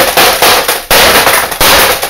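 About three loud hammer blows on the backlight panel of an LCD monitor, each a hard crash with a rattling after it. The panel is really tough and holds up under the blows.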